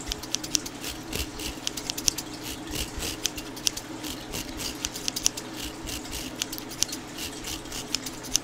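Bristles of a round hairbrush brushed back and forth across a microphone's metal grille, close up: a run of quick, crisp scratchy strokes, several a second, over a low steady hum.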